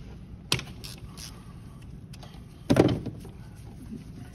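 Socket wrench on a long extension breaking a spark plug loose from the cylinder head: a short click about half a second in, then a louder, longer clunk near three seconds, over a steady low hum.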